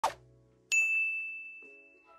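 A single bright chime sound effect: a ding about two-thirds of a second in that rings on one clear high note and fades away over about a second, after a brief short sound at the very start.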